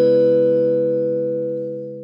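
A short musical logo jingle: the held chord left after three struck notes rings on and slowly fades out.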